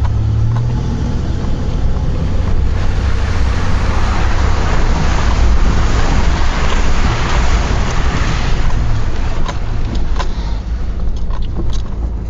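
Ford Explorer's engine running with a steady low rumble while the truck drives through a deep muddy puddle. Water rushes and splashes around the body and wheels, growing loudest through the middle seconds and easing near the end.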